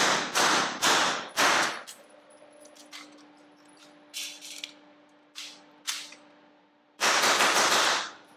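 Suppressed H&K MP5 firing four shots in the first two seconds, each with a ringing echo. Then a reload: a few sharp metallic clacks as the dropped magazine is replaced. A fast run of shots follows in the last second.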